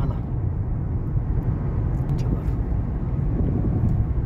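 Steady low rumble of a car's cabin noise while it drives along a highway.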